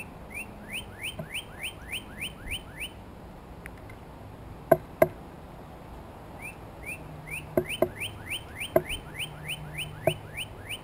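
Northern cardinal singing two runs of rising whistled notes, about three a second, the second run starting past the middle. Sharp knocks from a blue jay pecking seed on a wooden platform feeder: a loud pair about halfway through, then three more.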